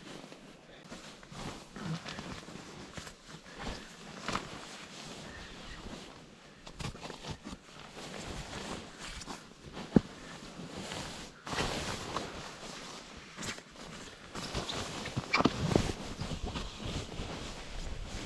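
Rustling and shuffling of a synthetic sleeping bag and clothing as a person gets into the bag and settles down, louder in a few stretches, with one sharp click about ten seconds in.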